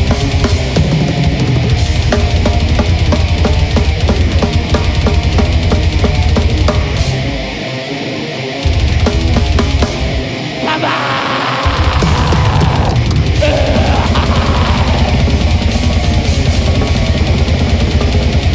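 Live heavy metal band playing loud, with dense drumming over a heavy low end. Around the middle the bass drops out twice, briefly, and a falling pitch sweep slides down before the full band crashes back in.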